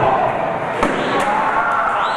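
A single sharp impact about a second in, a metal folding chair swung down onto a wrestler, over shouting voices.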